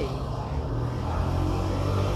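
Low, steady engine drone of a road vehicle nearby, growing louder partway through.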